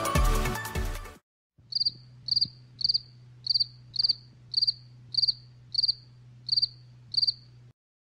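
A cricket chirps about ten times, a little under two chirps a second, each chirp a quick run of pulses. It is the 'crickets' sound effect for an awkward silence where nothing happens. It starts just after the music cuts off about a second in, over a faint low hum.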